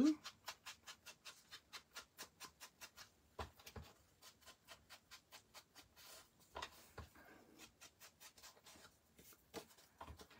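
Round ink blending tool rubbed quickly along the edges of a paper card to ink and distress them: soft brushing strokes about four a second, then slower, irregular strokes with a couple of dull knocks.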